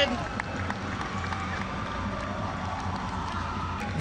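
Steady crowd noise from a football stadium, an even din with no single event standing out.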